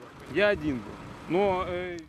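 A man's voice speaking in two short phrases, over a low vehicle rumble.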